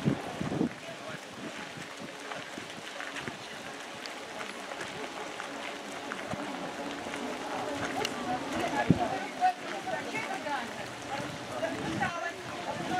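Indistinct chatter of several people talking at once, with no single clear voice. It grows busier and louder from about two-thirds of the way in.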